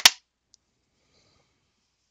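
A metal Blu-ray steelbook case snapping open: one sharp click with a brief ring, then a faint tick about half a second later.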